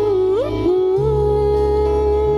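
Live pop band playing a slow passage: a held sung note, sliding briefly up and back down about half a second in, over sustained bass notes and no drums.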